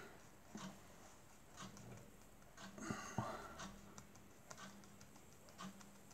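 Faint, scattered soft taps and slides of fingers moving over a face-up spread of playing cards on a cloth close-up mat, a few light touches every second or so.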